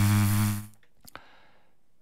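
A low, steady buzzing tone that holds one pitch and cuts off just under a second in, like a buzzer sound effect. After it there is quiet with a faint click.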